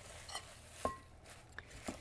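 Faint clinks of utensils against a glass salad bowl as greens are tossed, a few separate light knocks, one about halfway through ringing briefly.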